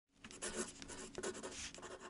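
Pen scratching across paper in a run of short, irregular strokes: a handwriting sound effect.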